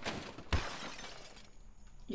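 A sudden crash-like noise burst that dies away over about a second and a half, with a sharp knock about half a second in.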